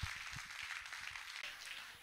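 Faint audience applause with scattered hand clapping.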